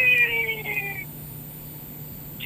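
A single drawn-out, meow-like call, about a second long, gliding slightly down in pitch.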